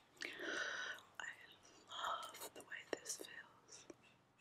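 A woman whispering close to the microphone, in short breathy phrases with a few sharp clicks between them.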